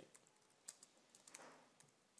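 Faint computer keyboard typing: a few irregular, quiet keystrokes.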